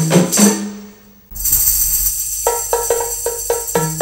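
An ensemble of rebana frame drums beaten in a quick, even, interlocking rhythm, with a bright metallic jingle over the beats. The playing breaks off briefly about a second in, then picks up again and grows stronger.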